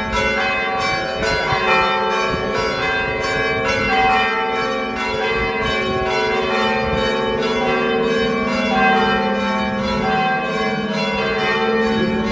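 Church bells rung continuously, struck in quick succession, their tones overlapping and ringing on.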